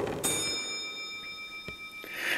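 A single bell strike: a small bell rings out suddenly and its ringing tones slowly fade, the highest ones dying first.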